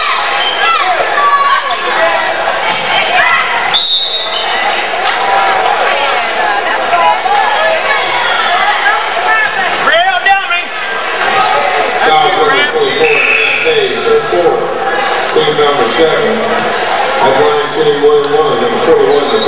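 Echoing gym sound of a girls' basketball game: a basketball bouncing on the hardwood under a steady wash of crowd voices. About four seconds in comes a short, high referee's whistle blast, the call that stops play for a foul.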